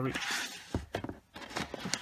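Plastic DVD cases being handled on a shelf: a short scraping rustle as a case is slid out, then a few light clicks and knocks as cases are tipped forward.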